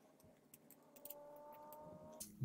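Near silence with a few faint ticks from a craft knife blade working at a 3D-printed PLA turbine, trimming off leftover print support.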